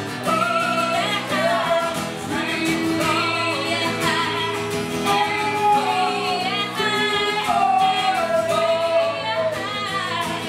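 Live acoustic pop-rock performance: male and female voices singing together over a strummed acoustic guitar and an electric stage piano.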